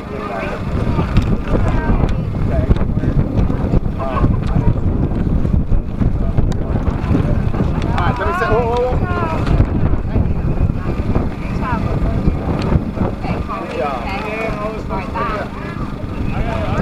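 Wind buffeting the camera microphone in a heavy, uneven low rumble that rises just after the start and eases about two seconds before the end, with faint voices in the background.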